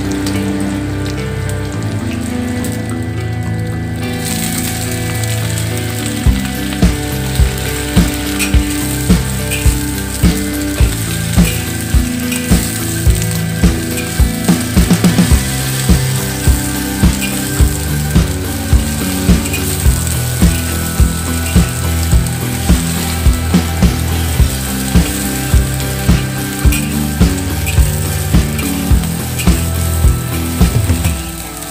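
Chinese cabbage stir-frying in hot oil in a wok, the sizzling growing louder about four seconds in, with a metal spatula knocking and scraping against the wok about twice a second from about six seconds in. Background music plays throughout.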